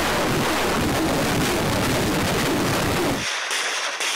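Truck-mounted multiple rocket launcher firing a salvo: a loud, continuous roar of rocket launches that cuts off suddenly near the end.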